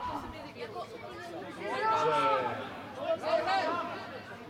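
Men's voices shouting on a football pitch: one long call about two seconds in and a shorter one near the end.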